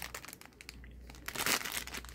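Clear plastic zip-bag packaging crinkling as it is handled and turned over. It makes a run of irregular crackles, thickest about one and a half seconds in.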